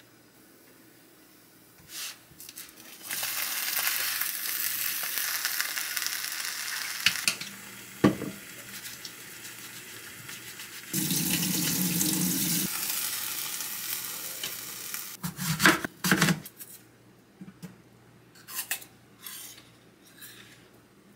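Food sizzling in a frying pan, then tap water running into a stainless-steel sink as an apple is washed by hand. A sharp click and a few knocks of kitchenware come between.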